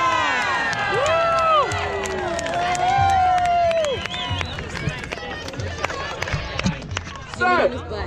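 A large crowd of spectators cheering and shouting, several voices whooping with long rising-and-falling calls, thinning out about halfway through.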